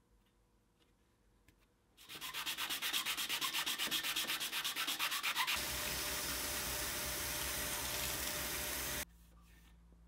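Abrasive paper on a wooden block sanding the face of a metal disc as it spins in a lathe. The rubbing first pulses several times a second, then runs on steadily over the lathe's hum, and cuts off suddenly about nine seconds in.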